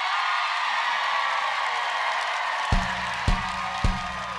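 Studio audience applauding and cheering. About two-thirds of the way in, a kick drum starts a steady beat, a little under two strokes a second, over a low held bass note: the opening of the band's song.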